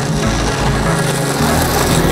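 Longboard wheels rolling over rough asphalt, a scraping roll that grows louder as the board nears and passes close by near the end, over background music with steady low notes.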